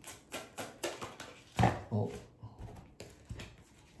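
Tarot cards being handled and flicked through, a run of sharp papery clicks about four a second, then sparser, fainter clicks.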